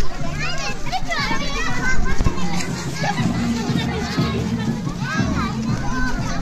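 Many schoolchildren's voices talking and calling out at once, with music underneath.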